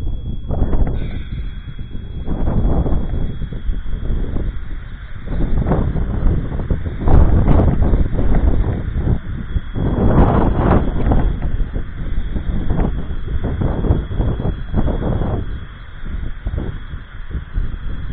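Wind buffeting the microphone in irregular gusts, with a faint steady high tone underneath.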